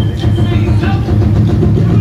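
A live drum band playing loud, continuous music with a steady rhythm.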